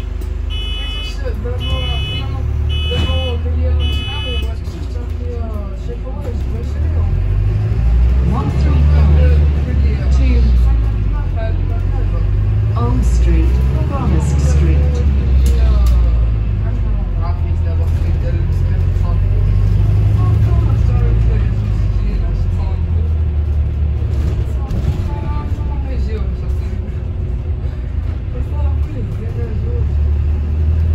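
Inside a Volvo B5LH hybrid double-decker bus under way: a steady low rumble from the drivetrain and road, growing louder for stretches as the bus picks up speed. A row of four short electronic beeps sounds in the first few seconds.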